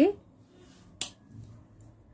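One sharp click about a second in, typical of double-pointed knitting needles knocking together as the work is handled; otherwise quiet.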